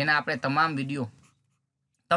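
A man's voice speaking for about a second, then silence.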